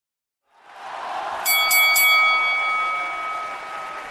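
A boxing ring bell struck three times in quick succession, about a quarter second apart, then ringing on and slowly fading. Under it, a wash of noise swells up from about half a second in.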